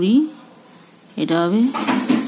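A woman's voice speaking in two short stretches, with a brief pause between them.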